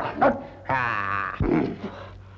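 A man's wavering, drawn-out yelp, followed by a shorter, lower cry, as water is poured over his head.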